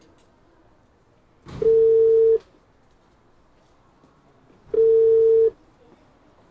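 Telephone ringing tone (ringback) from a phone handset, the call ringing and not yet answered: a single steady pitch, under a second long, sounding twice about three seconds apart.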